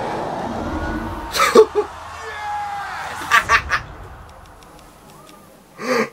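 A man laughing in short bursts, about a second and a half in and again after three seconds, over a trailer soundtrack playing through speakers. The soundtrack fades away over the first four seconds.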